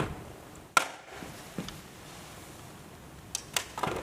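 A portable cassette boombox set down on a stage floor, with a sharp knock just before a second in. A few lighter knocks and shoe scuffs follow, clustered near the end, over faint room tone.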